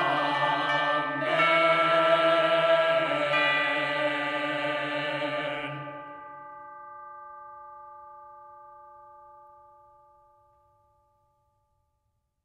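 The closing chord of a medieval Latin chant: women's voices hold a sustained chord over a low note, shifting about a second in. The voices stop about six seconds in, and a ringing tone fades out over the next five seconds.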